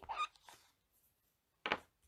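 Mostly quiet room tone. The tail of a short spoken word falls at the very start, and a brief soft noise comes near the end.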